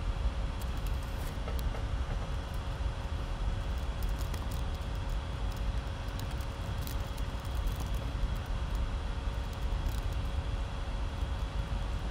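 Steady low hum of room background noise, with scattered runs of faint clicking from keys being typed on a computer keyboard.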